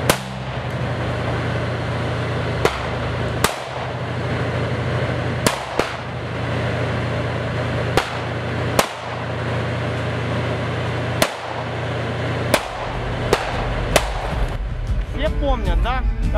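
Small-arms gunfire: about a dozen single rifle shots at irregular intervals over a steady low drone.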